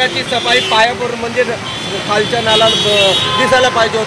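Mostly men's voices talking, over a steady background of rain and street traffic. A steady high-pitched tone from the street sounds for about a second and a half in the middle.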